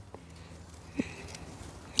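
Gloved hands digging through loose potting soil and pulling up roots, a faint rustle and scrape with two small knocks, one near the start and one about a second in.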